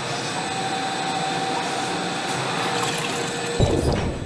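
A loud, steady rush of water-like noise with faint held tones over it. About three and a half seconds in, a deep low splash or impact hits, as of something plunging into water.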